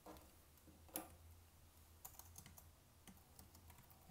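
Faint keystrokes on a computer keyboard: a few scattered clicks, the sharpest about a second in.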